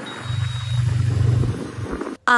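Wind rumbling on the microphone of a moving motorbike. The rumble swells shortly after the start and fades near the end, over a faint hiss of road noise.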